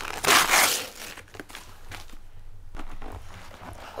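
Gift-wrapping paper crinkling and tearing as a present is unwrapped, loudest in a burst near the start, then softer rustles and a few small clicks.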